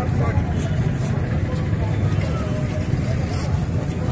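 Several people talking outdoors, their voices indistinct, over a steady low rumble of street traffic.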